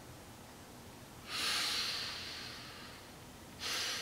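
A woman breathing audibly during a pause in her speech: one long breath that starts sharply and fades over about a second and a half, then a shorter breath near the end.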